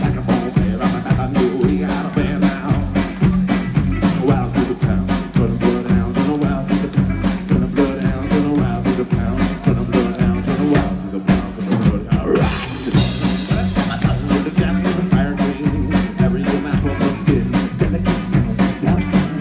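Live band playing a rock song: drum kit keeping a steady beat under acoustic and electric guitars and bass. A little past the middle the beat breaks briefly, then a cymbal crash rings out.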